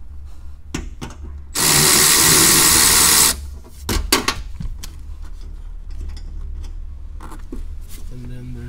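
Cordless electric ratchet running for just under two seconds, backing out a 10 mm bolt on the hybrid battery's cooling fan; a few sharp clicks and knocks of the tool and bolt follow about a second later.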